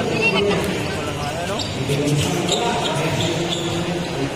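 Basketball bouncing on the court during play, with spectators' voices and calls around it.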